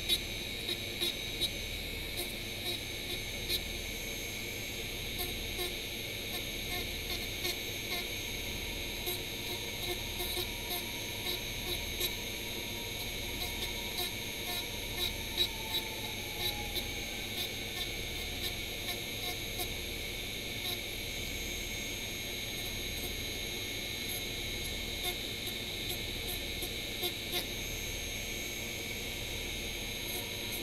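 Handheld rotary tool running steadily with a high whine, its spinning bit grinding and thinning down an XPS foam club, with many small scratchy ticks as the bit bites into the foam.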